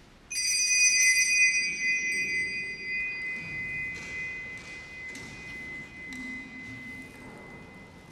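A small metal altar bell struck once, with a clear, high ring that fades slowly over several seconds.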